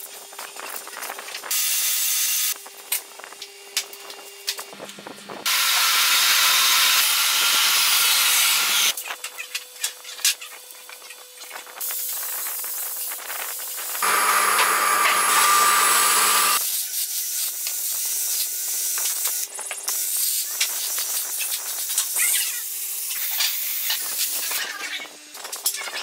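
A power tool sanding wood with a sandpaper strip, with two loud, steady stretches of sanding noise, one about five seconds in and one about fourteen seconds in. Between them are quieter clicks and handling sounds over a faint steady motor tone.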